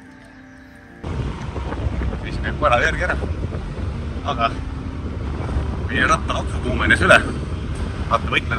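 Soft background music for about a second. Then it cuts to wind buffeting the microphone with a steady low rumble, and a man talks over it.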